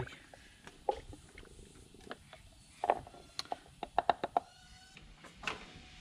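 Quiet, scattered clicks and light knocks of handling, with a few short squeaks around the middle.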